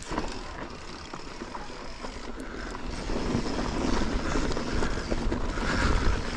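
Mountain bike rolling down a dry dirt trail: tyres running over dirt and small stones, with scattered clicks and knocks from the bike, and wind buffeting the chest-mounted camera microphone. It grows louder as speed builds.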